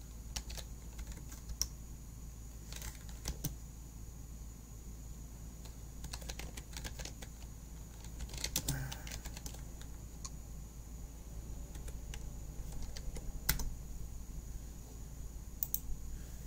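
Typing on a computer keyboard: scattered short key clicks in small irregular clusters with pauses between, over a faint steady low hum.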